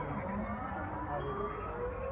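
Dutch public warning siren sounding its monthly first-Monday test, a wail whose pitch falls and then rises again, with more than one glide overlapping.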